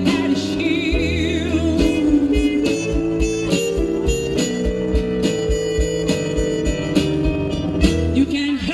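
Live band playing: regular kick-drum beats under held keyboard chords, with a wavering lead melody on top about a second in.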